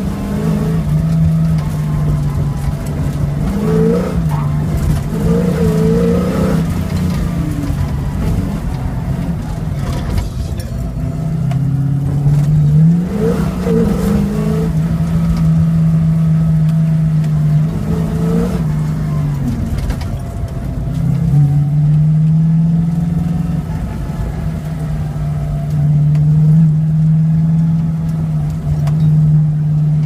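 A 1971 Ford Maverick's engine running hard around an autocross course: long stretches at steady revs, broken several times by short dips and rises in pitch as the throttle is lifted and reapplied.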